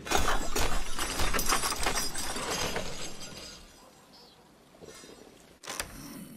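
A sudden clattering, shattering crash that starts at once and dies away over about three to four seconds, with a shorter burst near the end.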